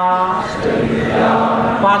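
Buddhist devotional chanting in Sinhala, voices praising the qualities of the Buddha. A held, steady note opens it, followed by a blurred mass of voices for about a second, and the chanted line returns near the end.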